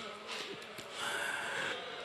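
A pause in a man's chanted recitation over a microphone: quiet room sound with faint breaths and weak, distant voices.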